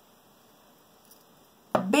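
Faint, steady room tone with no distinct sound, then a woman's voice starting near the end.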